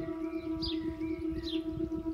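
A steady meditation drone, one held tone with overtones, with birds chirping softly behind it.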